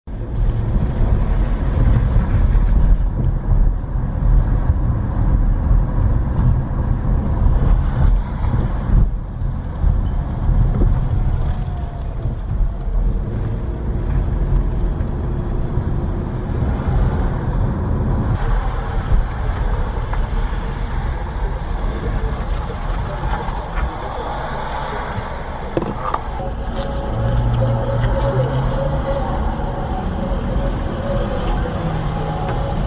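A car driving slowly, heard from inside the cabin: a steady low engine and road rumble with tyre noise.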